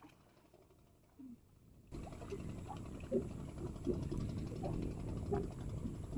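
Water sloshing and lapping with small splashes as a man wades chest-deep and reaches into the river to work a bamboo fish trap. It starts suddenly about two seconds in, after a near-quiet opening.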